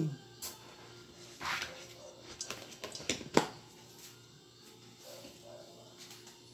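A few light clicks and knocks of kitchen utensils being handled at a stainless steel mixing bowl, with a brief rustle about one and a half seconds in and the sharpest knock about three and a half seconds in.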